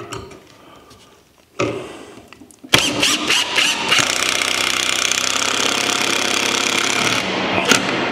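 Makita cordless drill driving a long wood screw into a wooden two-by-four. It gives a short run about one and a half seconds in, then a steady run of about four and a half seconds that stops about a second before the end.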